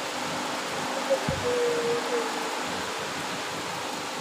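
A pause in the recitation: steady hiss and hum of the microphone and loudspeaker system, with a single soft low thump just after a second in and a faint drawn-out voice tone in the middle.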